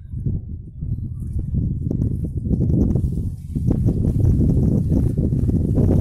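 Wind buffeting the phone's microphone: a low, fluttering rumble that grows louder over the first two seconds or so and then holds.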